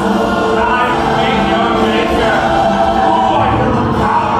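Choral music: a choir singing long, held chords.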